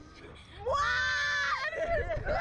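A girl's high held scream, starting about two-thirds of a second in and lasting about a second, rising in pitch and then holding level, with shorter broken voice sounds after it.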